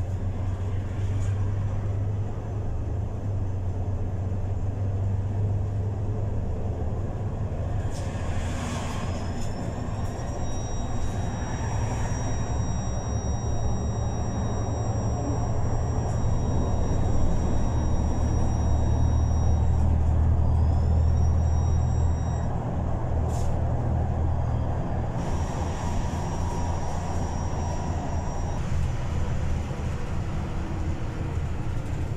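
Steady low engine and road rumble heard from inside a moving vehicle, swelling slightly in the middle. A faint, thin, high steady whine comes in about ten seconds in, drops out a few seconds before the end, and briefly returns.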